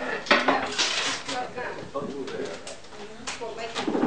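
Clattering and knocking of junk materials being handled and shifted on a tabletop: a burst of rattling near the start, then a few sharper knocks near the end, over a murmur of voices.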